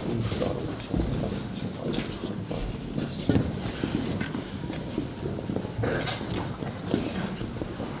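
Shuffling and rustling of a line of people moving in a small room, with scattered clicks and knocks. A few faint, very short high beeps come in pairs.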